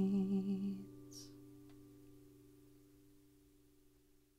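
Final Fmaj7 chord on an acoustic guitar ringing out and fading slowly, under a man's held vocal note that wavers slightly and stops about a second in.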